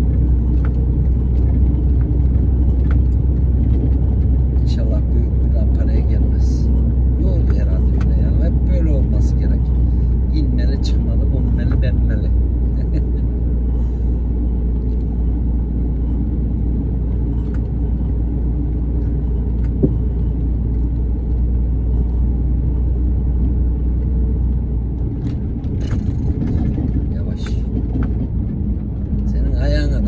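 Lorry engine and road rumble heard inside the cab on a cracked, patched road: a steady low drone with scattered short rattles and knocks. The low drone drops off for a few seconds near the end, then returns.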